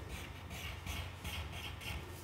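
Graphite pencil drawing on thick black card: a run of short scratchy strokes, about four a second.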